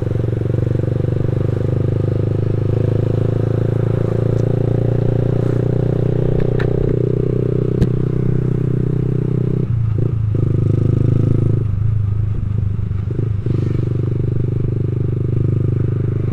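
A motor scooter's engine running steadily while it is ridden in traffic, heard from the rider's seat, with a few brief clicks about halfway through.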